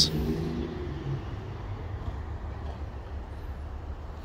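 A low, steady rumble under a faint even background hiss, easing slightly over the few seconds.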